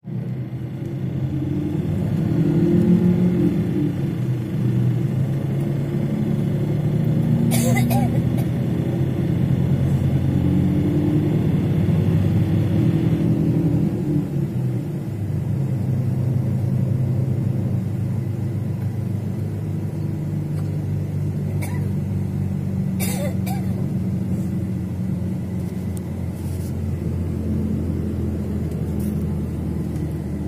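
Steady low road rumble heard from inside a moving vehicle, with indistinct voices under it and two short knocks, about a quarter of the way in and again about three-quarters of the way in.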